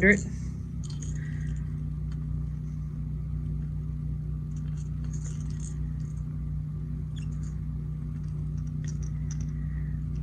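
Steady low hum of room or shop noise, with a few faint clicks and taps as hard plastic crankbait lures are handled in gloved hands.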